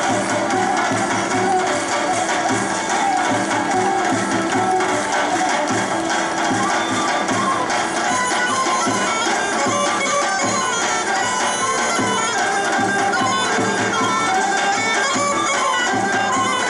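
Macedonian traditional folk dance music, instrumental, with a reedy wind melody over a steady drone, playing continuously.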